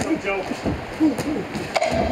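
Punches landing in a boxing exchange: a few sharp smacks, the loudest about a second in, under shouting voices from ringside, with one voice holding a long shout near the end.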